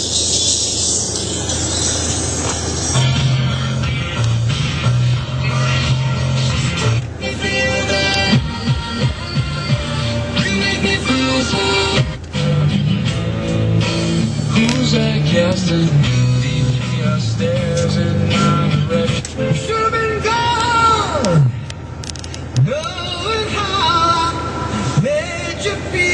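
Music playing through the pickup truck's working front stereo speaker inside the cab.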